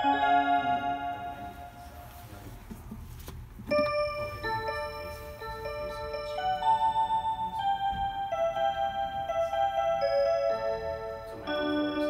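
Seiko mantel chime clock playing one of its built-in melodies in clear, bell-like notes. One phrase dies away in the first couple of seconds, and after a short lull a new melody starts about four seconds in and carries on.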